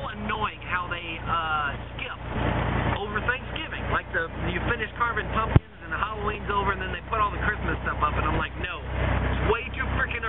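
A man's voice over the steady low drone of a moving car's engine and tyres, heard inside the cabin. There is a single sharp click about halfway through.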